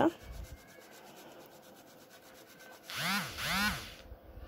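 Fresh ginger being grated on a flat stainless-steel grater: quiet, quick, even rasping strokes. Near the end, a person's voice makes two short sounds that rise and fall in pitch.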